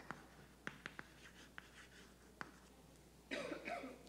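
Chalk writing on a blackboard, faint: a handful of separate sharp taps and strokes as a word is written. A short soft noise near the end.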